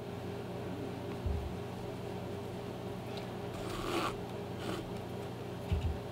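Thread being pulled through the stitching holes of a small leather moccasin, with a short rasp of thread on leather a little past the middle and another brief one soon after. A couple of soft knocks from handling the work, over a steady low hum.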